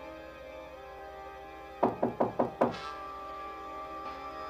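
Sustained dramatic TV underscore with held tones, cut into a little under two seconds in by a quick run of five loud knocks on a door.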